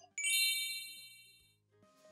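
A single bright, high chime sound effect, struck once and ringing out, fading away over about a second and a half.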